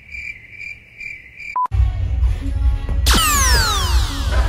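A cricket-chirp sound effect, a high chirp repeating about five times a second, runs for about a second and a half. A short beep follows, then backing music. About three seconds in, a falling whistle effect glides steeply down in pitch for about a second.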